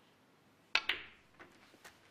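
A snooker cue tip strikes the cue ball, with a sharp click about three quarters of a second in and a second click just after as the cue ball hits the black at close range. Fainter knocks follow as the black is potted.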